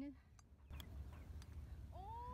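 A golf club striking the ball on a short chip shot: one sharp click a little under a second in, over a low rumble of wind on the microphone.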